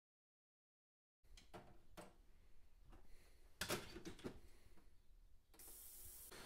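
Silence at first, then faint scattered clicks and knocks, with a short hiss near the end.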